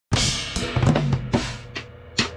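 Drum kit played hard: a cymbal crash at the start, then a rapid fill of about a dozen drum strokes, some leaving a low ringing tone, tailing off toward the end.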